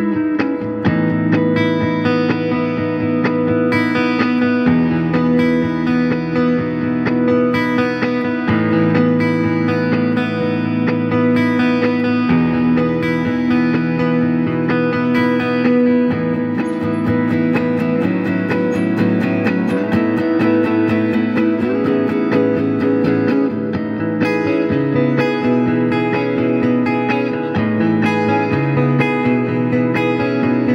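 A 1976 Fender Stratocaster electric guitar played through a Fender Deluxe Reverb tube combo amp. It plays a continuous passage of ringing chords and picked single notes, changing chords every few seconds.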